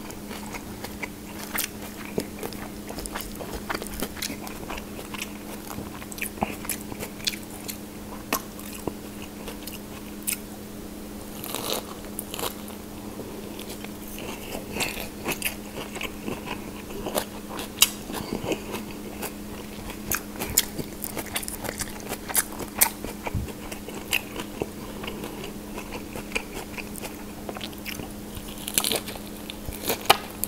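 Eating fresh shrimp spring rolls: biting and chewing through soft rice paper and crisp lettuce, with irregular crunches and wet mouth clicks, over a steady low hum.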